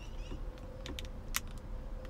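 A few light clicks, about three in the second half, from fingers tapping the MBUX infotainment touchscreen and touchpad controls, over a faint steady hum.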